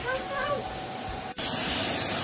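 Philips canister vacuum cleaner running with a steady hissing rush. After a brief break about a second and a half in, it comes back louder and brighter.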